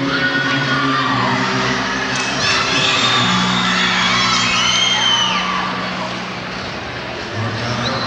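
Concert audience cheering and screaming, with high shrieks rising and falling above the crowd noise. Low, steady notes held by the band sound beneath the cheering.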